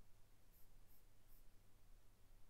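Near silence: room tone with a low hum and three faint, very short high-pitched ticks.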